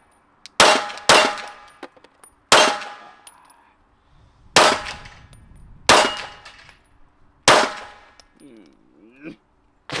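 Six 9mm pistol shots from a Glock 19 with a Radian Ramjet compensator, fired at an uneven pace, the first two close together and the rest about one to two seconds apart, each followed by a short ringing tail.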